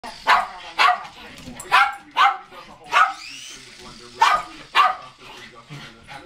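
Shetland sheepdog barking sharply, seven barks mostly in pairs about half a second apart.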